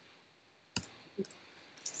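Two faint, sharp clicks of a computer mouse about half a second apart, the first louder.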